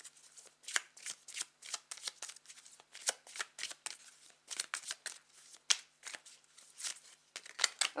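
A Jack O' Lantern Tarot deck being shuffled by hand: a quick, irregular run of short card flicks and slaps.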